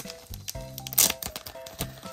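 Background music playing steadily, with one sharp crinkle of a foil booster-pack wrapper being handled about a second in.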